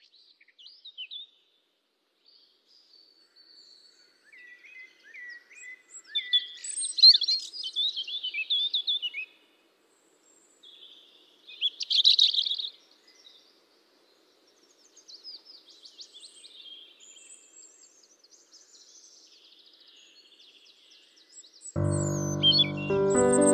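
Birds chirping and singing in many short, high calls and trills, loudest in bursts about a third of the way in and again around halfway. Instrumental music with held notes comes in at the very end.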